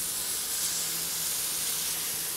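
Elk smash burger patties sizzling steadily on a hot griddle just after being flipped.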